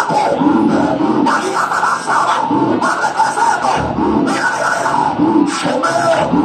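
A Pentecostal congregation praying and calling out aloud all at once, many voices overlapping over loud music.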